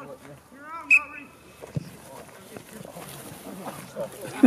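A referee's whistle blown once, a short, high blast about a second in, signalling the start of a rugby wrestling drill. It is followed by a dull thud and the scuffling of players grappling on grass.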